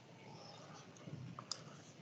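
Faint room tone with a single sharp click about one and a half seconds in, preceded by a weaker tick.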